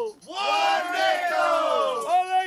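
Several men's voices yelling together, overlapping in rough unison, with a brief break just after the start.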